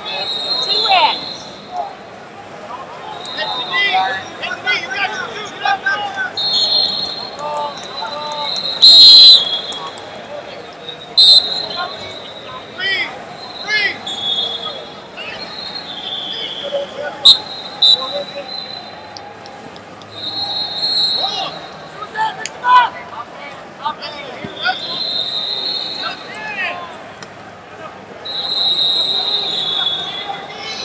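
Busy wrestling-arena sound: referee whistles from the surrounding mats blow in short blasts every few seconds, shoes squeak and bump on the wrestling mat, and coaches and spectators call out. The loudest moment is a sharp blast about nine seconds in.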